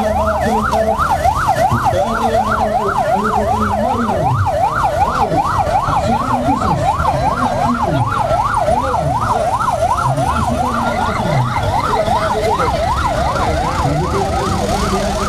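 Electronic vehicle siren on a fast yelp, a rise-and-fall wail repeating about four times a second, with vehicle engines running underneath.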